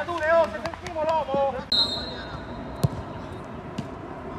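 Men shouting across a football pitch, then a short, shrill whistle blast, followed about a second later by one loud thud of a football being kicked hard.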